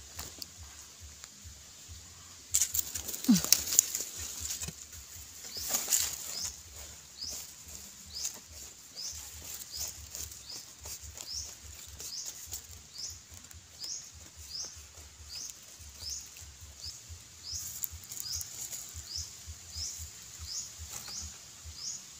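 Hands scraping and crumbling dry, crumbly soil around wild yam roots, with crackling and rustling that is loudest a few seconds in. Behind it, a high rising chirp repeats about three times every two seconds through the second half.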